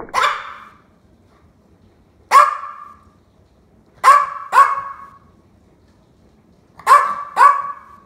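Small white long-haired dog barking: six sharp barks, one near the start and one about two seconds later, then two quick pairs, each bark with a short echo.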